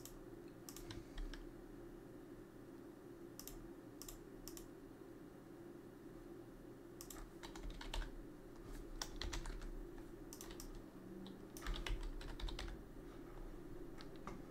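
Computer keyboard keystrokes and mouse clicks in scattered runs while values and a name are typed into a software dialog, the busiest stretches about seven to ten seconds in and again near twelve seconds. A low steady hum runs underneath.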